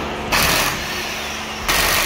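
Impact wrench run in two bursts against a car's wheel bolts: a short one about a third of a second in, then a longer one starting near the end.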